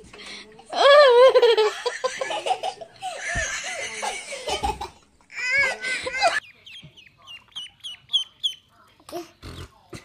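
A young child squealing and laughing in high, wavering bursts, then a quick run of about eight short, falling chirps from a small bird, a few to the second, from about seven seconds in.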